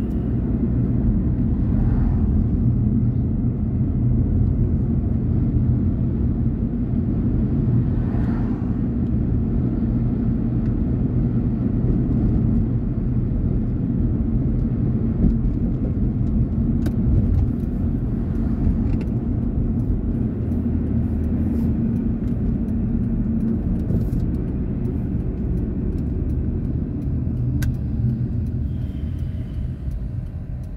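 A car driving along a road: a steady low rumble of engine and tyre noise, easing off slightly near the end as the car slows, with a few faint clicks.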